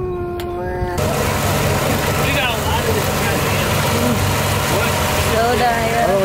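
A Honda outboard motor running steadily with the boat underway, over a wash of water and wind. Before it, a long held note breaks off abruptly about a second in.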